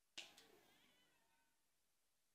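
A single faint, shrill human cry that starts suddenly and trails off, falling in pitch, over about a second. It is heard during deliverance prayer, where the preacher commands the person to keep calm and be quiet.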